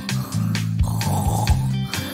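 A cartoon snore sound effect, once, from about half a second in, over background music with a steady beat.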